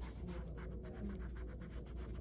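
ChloraPrep foam swab scrubbed with friction over a practice skin pad, a quick run of soft scratchy rubbing strokes.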